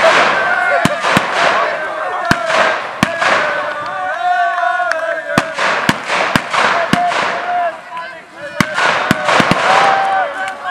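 Firecrackers going off in irregular sharp bangs, well over a dozen, over a crowd shouting and cheering.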